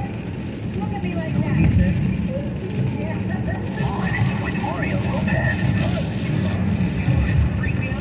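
Steady road noise inside a car driving on a wet, rain-soaked freeway. Faint, indistinct talk from the car radio sits underneath.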